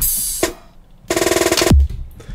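Drum samples played one at a time from the keys of a Zeptocore pocket sampler. First comes a short hissing cymbal-like hit, then about a second in a longer buzzy hit, and near the end a deep kick drum with a falling pitch.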